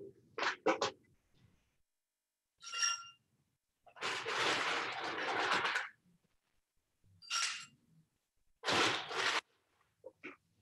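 Ice cubes being handled and dropped into a glass mixing glass: a few separate ringing clinks of ice on glass, and a rattle of ice lasting about two seconds from about four seconds in.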